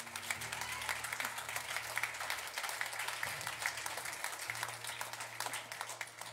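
A congregation applauding: many hands clapping in a dense, irregular patter, with a low steady tone held underneath.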